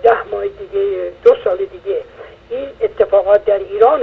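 Speech only: a caller talking over a telephone line, the voice narrow and thin.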